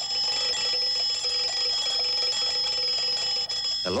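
Mechanical twin-bell alarm clock ringing continuously, its hammer rattling rapidly against the bells, and cutting off just before the end.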